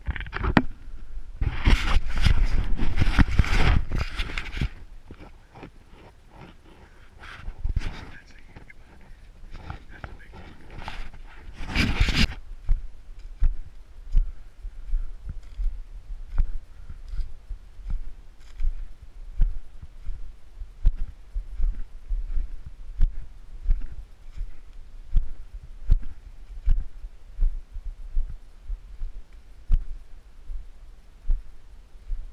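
Footsteps in snow over corn stubble at a steady walking pace, about three steps every two seconds. A loud rushing noise runs for a few seconds near the start, and a short burst of noise comes about twelve seconds in.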